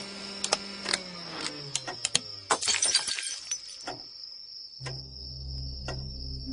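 Electrical crackling and clicking from a failing light under a fluctuating supply, with a hum that sinks in pitch as the power sags. A dense burst of glassy crackle about two and a half seconds in is the bulb blowing. A low steady hum comes in near the end.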